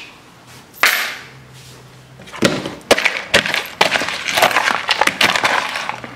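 Dry cereal and peanuts rattling and crunching as a spatula stirs them in a plastic bowl: a dense run of sharp clicks and crackles starting about two seconds in, after a brief rushing noise about a second in.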